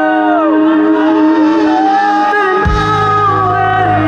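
Live band music played loud through a festival PA. Held notes carry arching, gliding melody lines over them, and a deep bass comes in a little after halfway.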